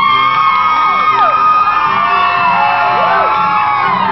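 Live acoustic band playing: acoustic guitars and ukulele strumming a steady rhythm, with voices holding long high notes that slide up and down in pitch, and whoops from the audience.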